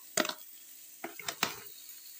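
Metal spoon scraping and knocking against a steel kadai while stirring frying onion and tomato: one short stroke just after the start, then a quick run of several more about a second in.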